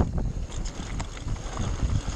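Mountain bike descending a dirt trail: wind buffeting the camera microphone over the rumble of tyres on packed dirt and scattered rattles and knocks from the bike over bumps, with a loud jolt right at the start.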